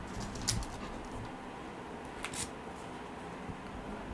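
Light handling noises: a few soft clicks and rustles as soil seedling plugs are pressed into a plastic 3D-printed holder, over a low steady room hum.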